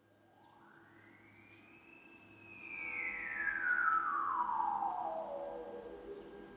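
Music: a synthesizer tone that swoops up in pitch and then slides slowly down, over a faint steady low drone, getting louder toward its middle.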